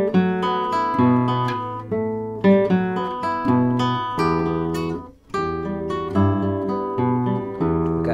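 Nylon-string guitar played fingerstyle: a slow passage of plucked notes with the bass line played by the thumb under higher notes. There is a brief gap about five seconds in before the playing resumes.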